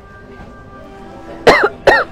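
A person coughing twice in quick succession, two loud coughs less than half a second apart near the end, over faint background music.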